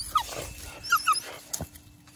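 Dog whining: one falling whine near the start, then two short high squeaks about a second in. A single sharp knock follows just after the middle.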